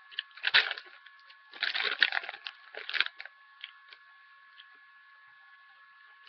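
Crunching on crisp baked cinnamon apple chips: several loud crunches over the first three seconds, then quieter chewing.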